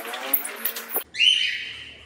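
Cockatiels calling: a harsh, scratchy call in the first second, then one long, steady high whistle about a second in that fades. The birds are calling because the pair, used to living together, have been split into separate cages.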